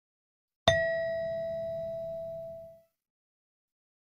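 A single bell-like chime struck once about half a second in, ringing with a clear tone and fading away over about two seconds: the cue sounded before the next listening-test question is announced.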